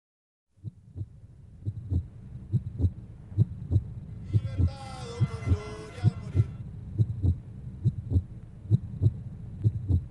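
A deep heartbeat-style double thump, repeating steadily at a little under one pair a second with faint high ticks on the beats, opening a song. A voice rises over it for about two seconds in the middle.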